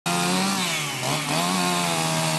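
Chainsaw running as it cuts a firewood log, its pitch dipping briefly about a second in under the load of the cut before settling back to a steady run.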